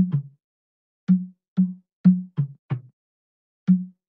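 A plastic soda bottle partly filled with water, struck with a stick as improvised percussion: about eight short, low knocks in a loose rhythm, each dying away quickly. It stands in for the percussion part of the original recording.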